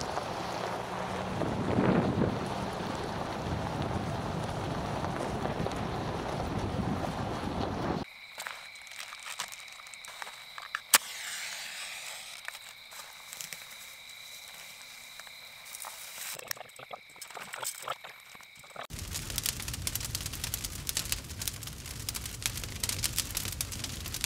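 Wind buffeting the microphone for about eight seconds. Then a quieter stretch with two steady high tones and one sharp click. From about five seconds before the end, a small wood campfire crackles.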